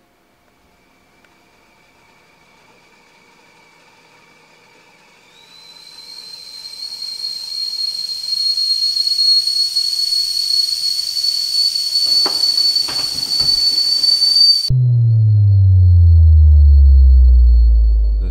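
Stainless stovetop whistling kettle on an electric burner coming to the boil: a faint hiss, then from about five seconds in a high whistle that swells louder and climbs slightly in pitch. About fifteen seconds in the whistle cuts off suddenly and a loud deep tone slides downward for the last few seconds.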